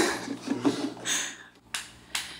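A few short, sharp clicks and snaps in a quiet room, with a quick run of them near the end, just before the band starts a song.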